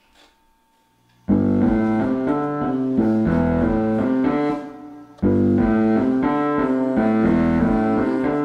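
Digital keyboard in a piano voice playing a song intro of repeated chords over low bass notes. It comes in about a second in, drops out briefly past the middle, then plays a second phrase.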